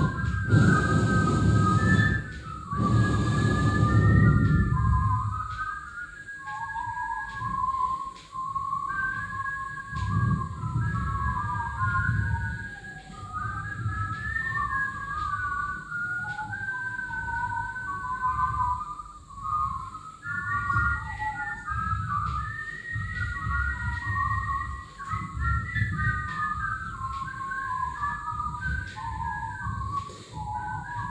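A freely wandering whistled melody, one pitched line leaping and wavering, performed as live avant-garde music over a low-pitched accompaniment. The accompaniment is strong for the first few seconds and then comes and goes in pulses.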